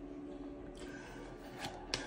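Faint handling of a deck of playing cards: a card is slid off the deck and laid on a wooden table, with a few soft clicks in the second half.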